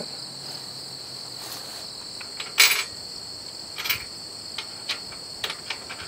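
Steady high-pitched drone of insects, with a few short metallic clanks and knocks as a steel angle-iron tongue is handled and set onto the cultipacker frame; the loudest clank comes about two and a half seconds in.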